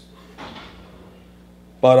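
A short pause in a man's talk: faint room noise with one soft, brief sound about half a second in, then his voice resumes near the end.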